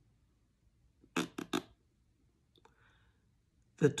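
Three quick, short vocal sounds from a woman about a second in, with near quiet around them.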